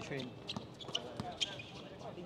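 A basketball bouncing on a hard outdoor court, a few separate sharp knocks, with players' voices calling faintly in the background.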